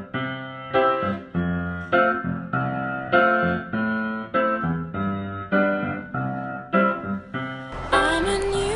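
Piano music: a chord struck about every half-second or so, each ringing and fading before the next.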